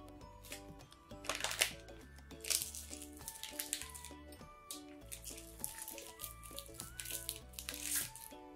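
Light background music, a simple melody of short notes, with a few short noisy rustles over it, the loudest about a second and a half in and again about a second later.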